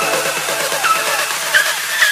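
Electronic dance music: a repeating synth figure with a short swooping high note about once a second over sustained chords, with no bass.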